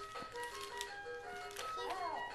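A children's electronic musical toy playing a simple tinkling tune of short beeping notes that step up and down in pitch.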